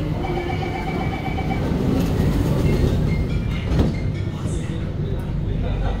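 Circle Line C830C train at a platform sounding its door-closing beeps in the first second and a half, then a single knock as the doors shut about four seconds in, over the steady low hum of the stationary train.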